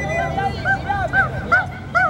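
A fast run of short, high dog yips, about six a second, over crowd murmur.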